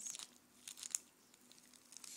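Small plastic baggie of glitter mix crinkling as it is handled: a few brief, faint rustles in the first second, then little more.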